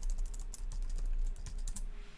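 Rapid typing on a computer keyboard: a quick, dense run of key clicks, entering the next stock's name or code to bring up its chart.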